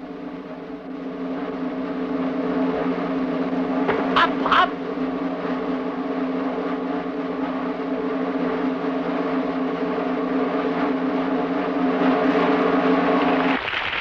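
A sustained, droning held chord swells over the first few seconds and then holds steady, building suspense before the trick. Two brief rising whistle-like sounds come about four seconds in, and the chord cuts off suddenly just before the end.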